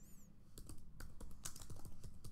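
Typing on a computer keyboard: a quick, irregular run of key clicks as a short word is typed.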